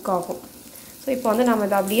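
A woman speaking over the faint sizzle of small stuffed brinjals frying in oil in a stainless steel pan. The voice drops out for about half a second near the middle, leaving only the quiet sizzle.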